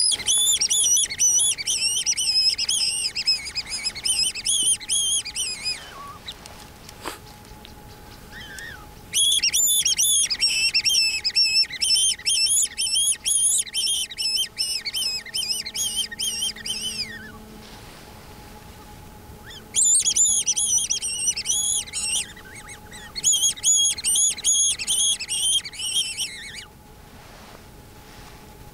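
Predator call giving rapid, high-pitched squealing prey-distress notes, in three bouts of several seconds each, used to lure jackals within rifle range.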